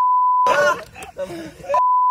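A steady single-pitch censor bleep replacing speech, twice: about half a second at the start, then again from near the end, with men's talk and laughter briefly audible in between.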